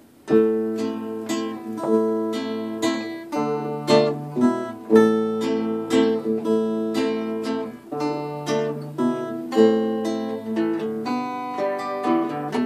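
Two acoustic guitars playing a simple minor-key melody in duet, one picking the tune while the other, a nylon-string classical guitar, plays the harmony. The notes are plucked in a steady, even beat.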